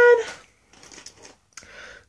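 A spoken word trailing off, then faint, scattered rustling of small items being handled and pulled out of a purse.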